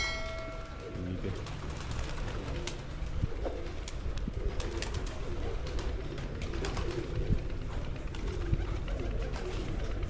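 A flock of domestic pigeons cooing in a wire-mesh loft, with scattered light clicks. A short steady tone sounds for about a second at the very start.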